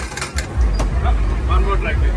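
A mallet strikes a carnival game's frog launcher: one sharp knock at the start, then a few lighter clicks, over a steady low rumble and crowd chatter.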